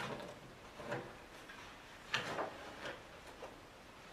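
Paper drilling template being peeled off a metal enclosure, its painter's tape pulling away: a few short rustles and scrapes, the loudest about two seconds in.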